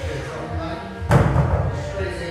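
A pair of dumbbells set down on the gym floor with one heavy thud about a second in, over background music.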